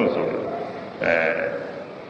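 A Burmese Buddhist monk's voice preaching a sermon in Burmese, with one long drawn-out syllable about a second in.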